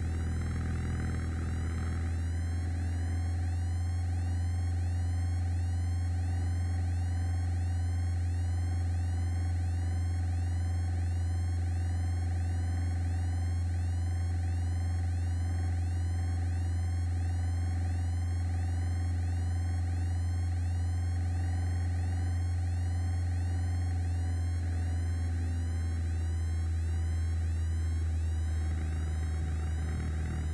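Piper PA-28 Warrior's engine and propeller droning steadily in cruise, heard in the cabin through the headset intercom, with a low hum and a fast, regular electronic-sounding pulsing over it.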